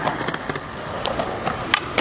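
Skateboard wheels rolling on concrete, with a few sharp board clacks, the strongest near the end.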